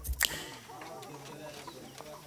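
A last beat of background music just after the start, then quiet outdoor ambience with faint, wavering clucking of chickens.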